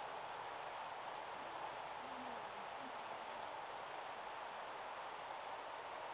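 Faint, steady outdoor background noise with no distinct event in it.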